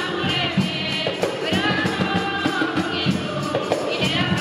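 Women's group singing together in a Garífuna hymn, backed by large hand drums beating a steady, quick rhythm.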